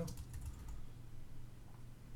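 Typing on a computer keyboard: a quick run of key clicks, most of them in the first half second or so, as a text field is filled in.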